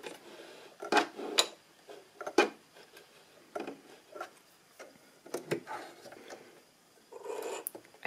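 Hand-threading a Singer Heavy Duty sewing machine: thread rubs as it is drawn out under the presser foot and across the metal needle plate, with a few scattered light clicks from handling the machine.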